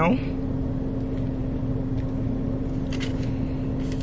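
Steady hum of a car running while parked, heard from inside the cabin, with a constant low tone under it.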